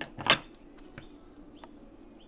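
A short sharp sound just after the start, then a few faint light clicks from craft materials being handled on a desk, over a low steady hum.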